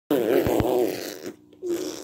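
A baby vocalizing: a wavering, drawn-out voiced sound lasting about a second, then a shorter one near the end. Two soft thumps come about half a second in.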